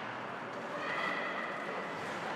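Ice hockey game in play heard from the stands: skates cutting the ice and sticks on the puck over the arena's crowd noise, with a high held tone joining about a second in.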